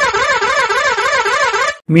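A warbling, pitched sound effect with a rapid, regular wobble in pitch, about four swings a second. It cuts off suddenly near the end.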